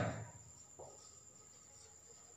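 Near-quiet room with a faint, steady high-pitched whine, after a man's spoken word trails off at the very start.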